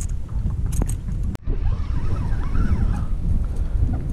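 Wind buffeting the microphone on an open boat: a rough, steady low rumble, with one sharp click about a second and a half in.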